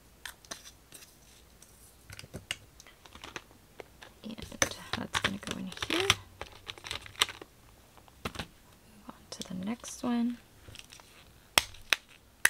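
Small clear plastic drill pots and a hinged plastic storage case clicking and clattering as they are handled: the case lid is opened and the little pots tapped and set down, with a busier stretch of plastic clatter in the middle.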